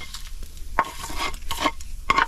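A utensil scraping fried soy chunks out of a hot cast-iron skillet onto a plate, with several sharp scrapes over the steady sizzle of the oil left in the pan.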